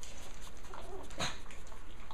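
Japanese Chin puppy giving a couple of short, high whimpering cries, the louder one a little after a second in.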